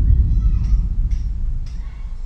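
A sudden deep boom that dies away slowly, its rumble fading over a few seconds.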